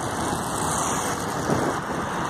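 Steady road traffic noise from cars driving along a wide multi-lane city street.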